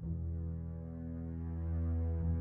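Ambient background music: a low sustained drone of held tones, swelling slightly toward the end.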